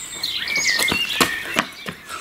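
Outdoor birdsong: many short, quick chirping and whistled notes, with a few sharp ticks mixed in.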